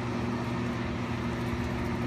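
Biosafety cabinet (cell-culture hood) blower running with a steady hum.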